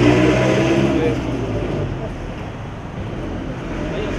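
Busy street noise: vehicle engines running close by with a low hum, loudest in the first second, over steady traffic noise and background voices.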